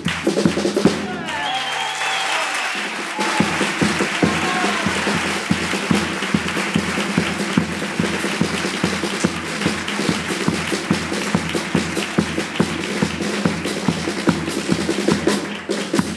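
Audience applauding while a carnival bass drum keeps up a steady beat.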